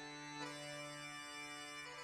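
A faint MIDI tune playing: steady held synthesized notes over a sustained bass drone, which sounds bagpipe-like or Scottish to the listeners. The bass note steps down a little past the middle.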